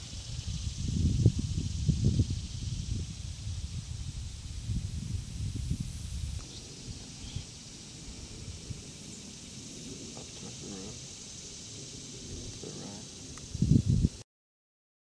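Outdoor field ambience: wind rumbling on the microphone through the first six seconds, then easing, over a steady high hiss, with faint voices near the end.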